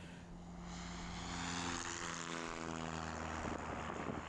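A light propeller aircraft's engine running steadily, growing louder over the first second or so as it comes closer.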